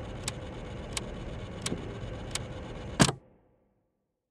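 A steady hiss with a faint low hum and sharp ticks about every 0.7 s. A louder click comes about three seconds in, then the sound cuts off to silence.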